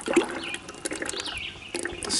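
Thick black waste motor oil glugging and splashing as it is poured from a plastic jug into a plastic bucket.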